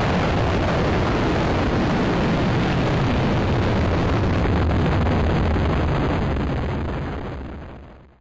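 High-power model rocket motor burning at liftoff: a loud, steady, deep rushing noise that fades away over the last second or so.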